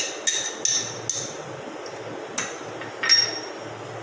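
Steel spoon knocking against a glass mixing bowl while boiled bottle gourd is spooned in. A quick run of clinks comes in the first second, then two more later, the last the loudest with a short high ring.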